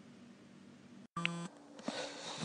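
Faint low room hum that cuts off about a second in, followed by a short electronic beep lasting about a third of a second.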